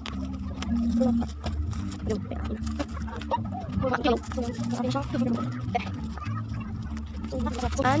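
Bubble wrap crinkling and rustling as it is cut with a knife and pulled open by hand, in irregular short crackles, over background voices and a low steady hum.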